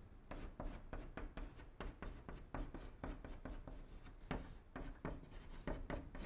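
Chalk writing on a blackboard: a quick, irregular run of short taps and scratches as characters are stroked out.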